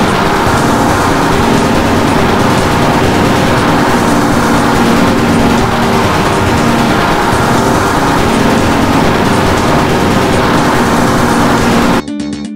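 A loud, steady rushing noise with a faint low hum under it, a sound effect for the animation. It cuts off suddenly at the end.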